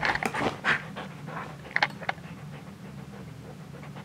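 A dog panting in quick short breaths for about the first second, then going quieter, with a couple of faint clicks about two seconds in.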